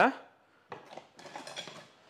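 Metal kitchen utensils clattering and rattling as a hand juicer is picked out from among them, starting a little way in and lasting about a second.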